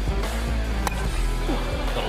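Background music with a single sharp crack of a baseball bat hitting the pitch a little under a second in, the contact on a home run swing.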